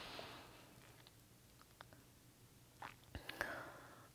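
Near silence between sentences: a soft exhaled breath fading out in the first half-second, then a few faint clicks and a short breath near the end.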